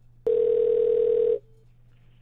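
Telephone ringing tone heard down the line while a call is being placed: one steady tone lasting about a second, starting a quarter second in and cutting off sharply, followed by a brief faint trace of it.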